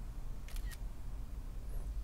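Smartphone camera shutter sound as a selfie is taken: a quick double click about half a second in.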